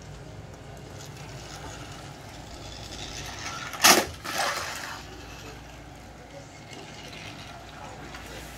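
A battery-powered Thomas & Friends toy engine running on plastic track, its small electric motor giving a steady low hum. About four seconds in comes a single sharp, loud clack, followed by a softer rattling hiss.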